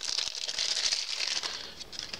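Thin clear plastic bag crinkling as a small power adapter is unwrapped from it by hand; the crinkling thins out near the end.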